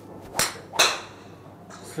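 Titleist TSi2 fairway wood (5-wood, 18°) swung at a golf ball off a driving-range mat: two sharp sounds less than half a second apart, the second louder and ringing, the clubhead striking the ball with the hollow 'kapōn' sound its tester describes for this head.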